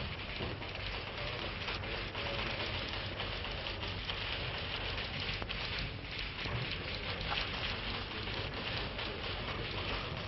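Steady hiss with scattered small crackles and ticks: the surface noise of a worn 1932 optical film soundtrack, with no dialogue over it.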